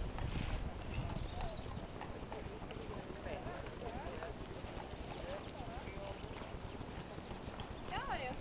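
Hoofbeats of a ridden horse moving over a sand arena, soft thuds that are strongest in the first second or so.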